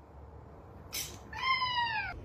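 A house cat gives one meow that falls in pitch, near the end, after a short tap about a second in.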